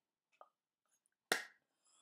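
A single sharp slap of hands striking together about a second in, preceded by a faint click; otherwise quiet.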